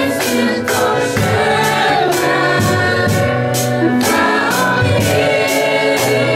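A children's choir singing a Christian song in unison through microphones, over an accompaniment with a steady beat of about two strikes a second.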